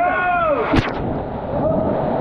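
A rider shoots out of an enclosed water slide tube into the splash pool: a shout at the start, one sharp splash-down impact a little under a second in, then rushing, churning water.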